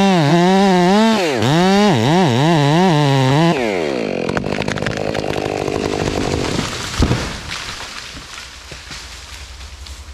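Gas chainsaw with a dull chain cutting at full throttle through the trunk of a big dead maple, its engine pitch dipping and recovering again and again before the throttle drops off about three and a half seconds in. The tree then cracks and crashes down through the brush, with a heavy thud about seven seconds in, and the noise dies away.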